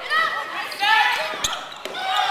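Volleyball rally: players' high-pitched voices calling out, with a sharp smack of the ball being played about one and a half seconds in and a lighter one just after.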